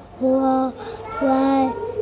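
A young child counting aloud in English, two drawn-out, sing-song number words about a second apart.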